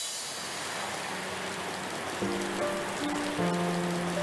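Rain falling steadily, with soft music of long held notes coming in about two seconds in.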